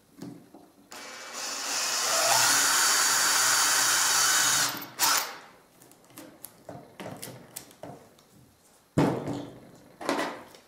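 Cordless drill with a wood bit boring through a strip of plastic: the motor spins up about a second in, runs steadily under load for about three and a half seconds, then stops. Scattered light knocks and clicks follow, with a louder knock near the end.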